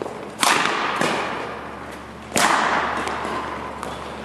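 Badminton rally: two loud racket strikes on the shuttlecock about two seconds apart, each ringing on in the hall's echo, with lighter ticks of play between them.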